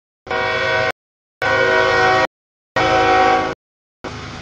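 CSX freight locomotive's air horn sounding three loud, steady blasts of under a second each, about half a second apart, as the train comes up to a grade crossing: the crossing warning signal.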